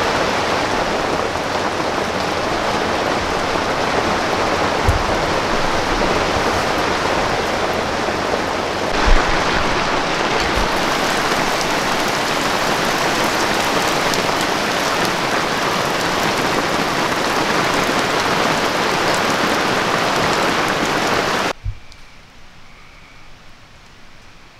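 Heavy rain falling on a canvas wall tent, heard from inside as a loud, steady hiss, with a few brief low thuds. It cuts off suddenly near the end, leaving a much quieter background.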